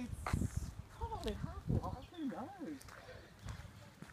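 Faint talk from a voice farther from the microphone, with a few soft knocks.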